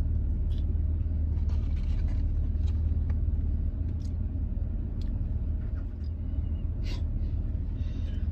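Vehicle engine idling, a steady low hum heard inside the cab, with a few faint clicks over it.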